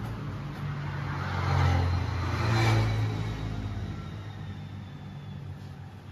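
A passing motor vehicle's low rumble that swells about two seconds in, then fades away.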